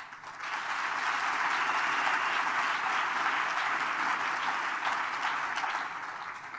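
Audience applauding: the clapping swells within the first half second, holds steady, and eases off near the end.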